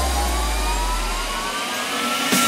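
Electronic trance music in a drumless build-up: a rising synth sweep over a wash of noise, with a deep bass note that drops away about three-quarters of the way through.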